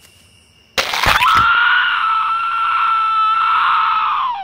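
A sudden sharp hit, then a long, high-pitched scream held on one steady note.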